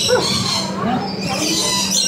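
Rainbow lorikeets chattering and squawking in short bending calls, over a steady low hum.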